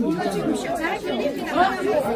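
Several people talking at once, voices overlapping in a confused chatter.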